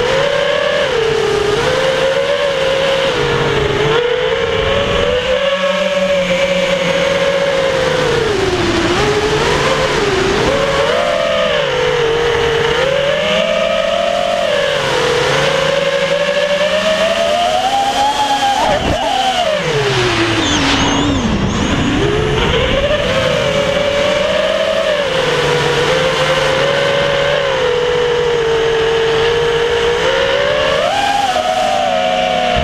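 Emax Hawk 5 FPV racing quadcopter's four brushless motors (RS2206 2300 KV) and propellers whining, the pitch constantly rising and falling with the throttle. About twenty seconds in the pitch dips sharply and then climbs back up.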